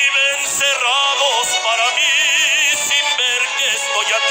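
A man singing a bolero over instrumental accompaniment, drawing out long notes with a wide, even vibrato, one held note sliding in pitch about a second in.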